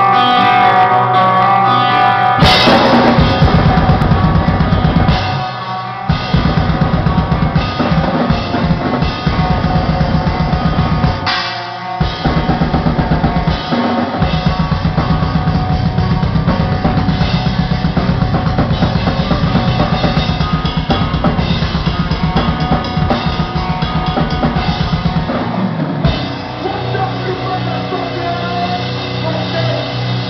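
A death metal band playing live, heard from right behind the drum kit, so the drums sit on top of the mix. Guitar notes ring on their own at first. About two and a half seconds in, the full kit comes in with very fast kick drums, snare and cymbals, dropping out briefly a few times.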